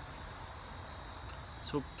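A steady chorus of insects, a constant high-pitched chirring, with a low rumble underneath.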